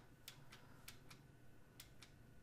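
Faint, sharp clicks at a computer, about five in two seconds and unevenly spaced, as trading-software stock charts are stepped through one symbol at a time; otherwise near silence.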